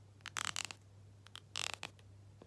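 A comb's teeth raked in two quick strokes close to the microphone. Each stroke is a short rasp of rapid fine clicks.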